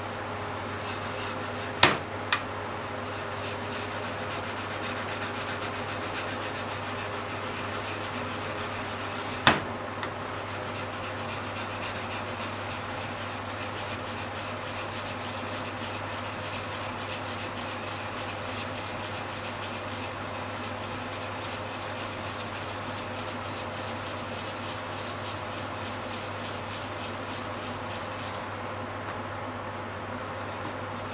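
Japanese mountain yam (yamaimo) being grated on a plastic grater, a steady run of rapid wet rasping strokes. Two sharp clicks come about two seconds in and another near ten seconds, and the grating stops shortly before the end.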